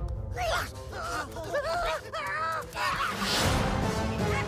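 Wordless squeaky vocalizing from a cartoon squirrel character: a quick run of short squawks and chirps that swoop up and down in pitch, over background music.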